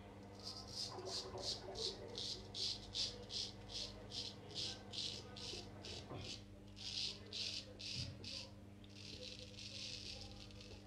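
Friodur 17 straight razor scraping through lathered stubble on the neck in short, quick strokes, about three a second, with a brief pause about six seconds in and a longer scrape near the end.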